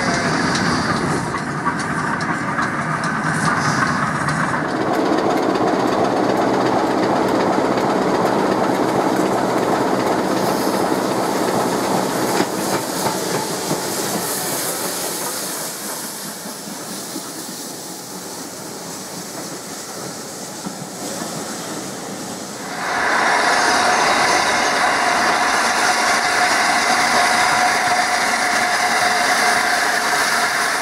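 Steam trains running, in three shots. First a small steam tank engine sandwiched between two auto-coaches passes. Then coaches roll by a station platform, wheels clicking over the rail joints and fading as they go. About three quarters of the way through, a louder hissing sound as the A1 Pacific steam locomotive 60163 Tornado approaches with steam blowing from its cylinders.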